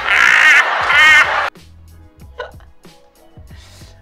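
A woman's loud, shrill, wavering laughter that cuts off suddenly about a second and a half in, followed by quiet background music with a low, steady bass beat.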